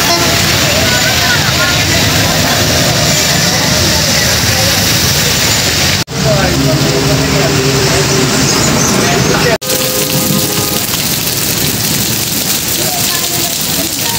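Heavy rain falling in a steady hiss on a flooded road, with motorbikes and rickshaws running through the standing water. The sound cuts out for an instant twice, about six and about nine and a half seconds in.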